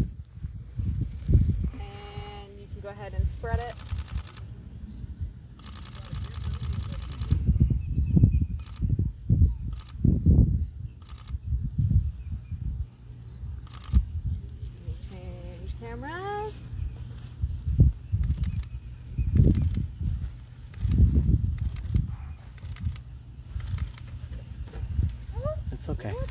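Camera shutter firing: a short rapid burst about four seconds in, a longer rapid burst a couple of seconds later, then single clicks spread through the rest. A steady low rumble of wind on the microphone runs underneath, and a few brief snatches of voice come in between.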